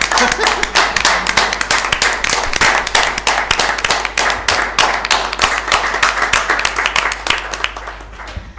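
Small group applauding: dense hand clapping that thins out and stops near the end.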